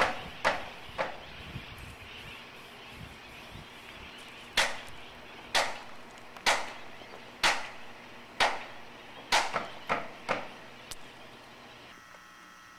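Sharp knocks of a long hand tool striking the riveted iron base of a lighthouse under repair. There are two knocks, a pause of about three seconds, then a run of knocks about one a second.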